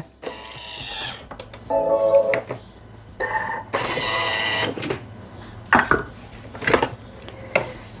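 Thermomix (Bimby) TM6 kitchen machine: two short electronic tones, a brief whirring burst about four seconds in, then a few sharp plastic clicks near the end.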